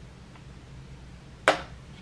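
A single sharp click about one and a half seconds in, over a faint steady room hum.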